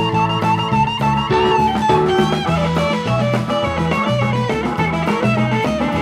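Live rock band playing an instrumental jam: an electric guitar leads with a long held, wavering note, then melodic runs, over a bass line stepping from note to note and a drum kit.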